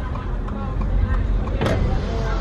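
Steady low rumble of a car driving slowly, heard from inside the cabin, with indistinct voices in the background and a brief click near the end.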